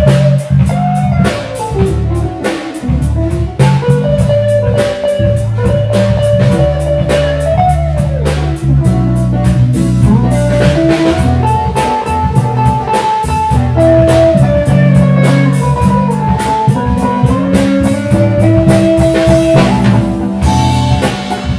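Live blues band playing an instrumental passage: electric guitar and keyboard over drums, with a held melodic line above a steady beat.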